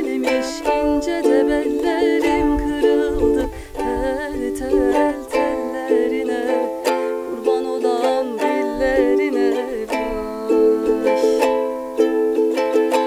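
Soprano ukulele strummed in steady chords, accompanying a woman singing an Anatolian folk song (türkü) with a wavering, vibrato-laden voice.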